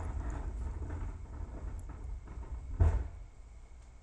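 A single dull thump about three quarters of the way through, over a low rumble that fades away.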